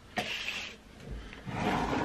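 A short breathy puff, then close rustling and rumbling handling noise as a hand moves right in front of the camera's microphone.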